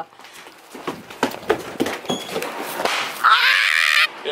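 Scattered knocks and clicks of people scuffling in a small room, then a high-pitched vocal squeal from about three seconds in.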